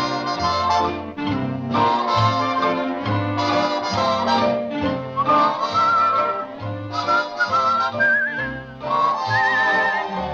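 Instrumental dance break of a 1940s swing-style song: a band plays over a steady bass beat, with a high, wavering melody line carrying the tune in the second half.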